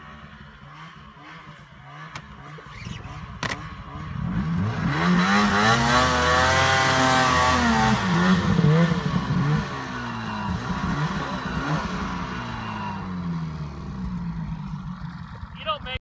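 Ski-Doo snowmobile engine revving: it comes up loud about four seconds in, climbs in pitch and falls back over a few seconds, then keeps running at a lower pitch and level.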